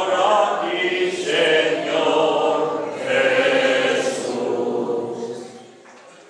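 Church congregation singing together, a sung response at Mass just after the Gospel reading, with long held notes. The singing dies away about five and a half seconds in.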